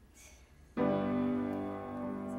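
Grand piano striking a chord about three-quarters of a second in, then letting it ring. This is the start of the song's introduction.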